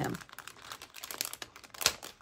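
Clear plastic packet of chipboard die cuts crinkling and crackling as hands pull it open, with one louder sharp crack near the end.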